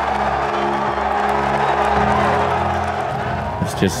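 Background music of held, sustained chords that shift about two seconds in, laid over a large golf crowd cheering. A man's voice begins just at the end.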